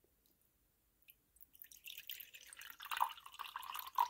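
Drink poured from a glass bottle into a ceramic mug: a few drips about a second in, then a splashing pour that grows louder.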